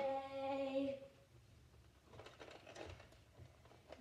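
A boy's voice holding a drawn-out "and…" for about a second, then a quiet room with a few faint taps and rustles of movement.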